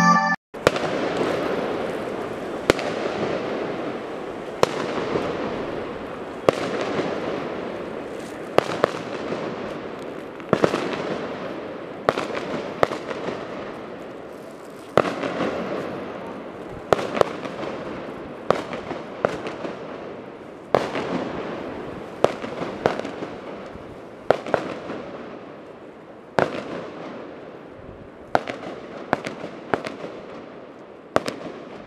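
Fireworks going off over the city: sharp bangs every second or two, each followed by a long echoing roll that fades away between the buildings, over a constant bed of more distant blasts.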